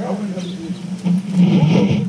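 Several people talking informally at once, over a steady low hum.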